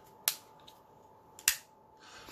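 Two sharp clicks: a light one a quarter of a second in, then a louder snap about a second and a half in, as the Benchmade Casbah push-button automatic knife fires its blade open. The snap is relatively quiet for an automatic because the blade stops against Grivory handle scales rather than aluminium.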